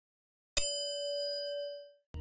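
A single bell chime sound effect, as for a notification bell: struck once about half a second in, it rings with a clear tone and fades out over a little more than a second.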